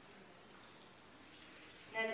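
Quiet room tone, a faint even hiss with no distinct sound, in a pause between speech.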